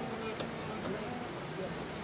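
A big herd of wildebeest calling together, many short grunting calls overlapping in a continuous chorus as the animals cross the river, with a single faint click about half a second in.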